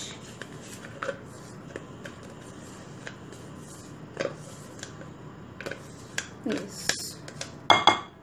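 A silicone spatula scraping olive oil out of a plastic measuring cup: scattered light scrapes and taps, busier toward the end, with a sharper tap near the end.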